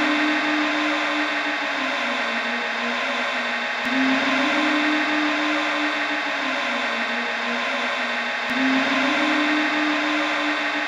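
Experimental electronic loop made from heavily processed samples: a dense, steady hiss-like wash with a low hum that rises, holds and sinks again, the cycle repeating about every four and a half seconds, each time starting with a sharp click.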